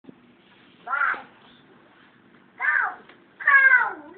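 A toddler making high-pitched, wordless vocal sounds: three short calls, the last one longer and falling in pitch.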